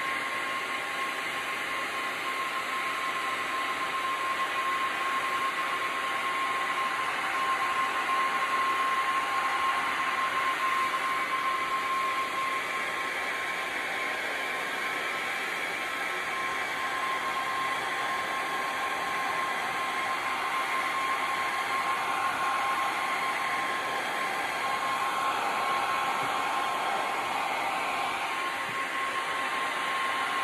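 Heat gun running steadily, blowing hot air across wet epoxy resin: a constant rush of air with a steady whine from its motor, swelling a little now and then as it is moved over the pour.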